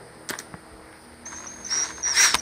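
A few light clicks of a socket being set onto exhaust manifold bolts, then a thin high-pitched whine from a cordless drill's motor spinning briefly, louder near the end.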